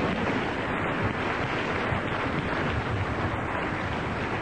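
Studio audience laughing and applauding after a joke.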